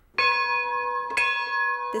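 A bell-like chime: bright, steady ringing tones that start suddenly, with a second, higher strike about a second later. The tones hold without fading.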